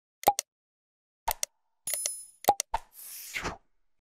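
Subscribe-animation sound effects: pairs of short clicks and pops, a bell-like ding just before two seconds in, more pops, and a brief whoosh near the end.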